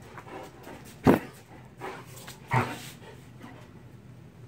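Dog barking during play: two short, loud barks about a second and a half apart, the first the loudest, with a softer bark between them.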